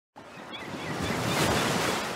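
Ocean wave sound effect: a surging rush of surf that swells to its loudest about a second and a half in, then begins to ebb away.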